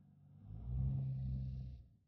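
Dodge Challenger engine running at a steady idle, heard from inside the cabin as a low, even hum that grows louder about half a second in and stops abruptly at the end.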